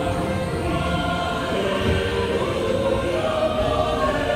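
Choral music from a ride soundtrack, with voices holding long chords that shift slowly from one to the next.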